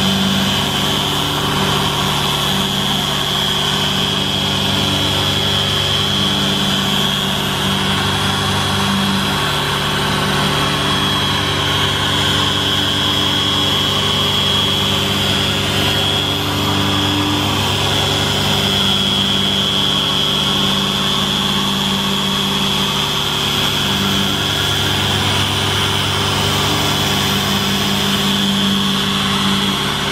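A petrol generator engine running steadily, mixed with the steady high whine of a Harbor Freight dual-action polisher buffing car paint.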